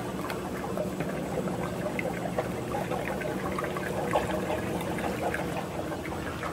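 Vanilla extract poured from a plastic jug into an ice cream batch freezer, a steady trickle of liquid, over a low steady hum.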